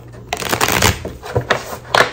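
A deck of tarot cards being shuffled by hand, a quick run of card flicks and riffles that starts about a third of a second in.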